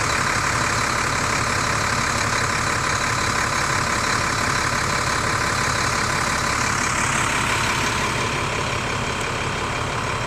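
Idling vehicle engines make a steady drone. The tone shifts slightly about eight seconds in.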